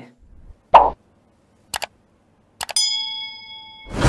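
Animated end-card sound effects for a notification bell: a short pop, then a quick double click. Near the end come more clicks and a bell-like ding that rings for about a second and fades, then another pop.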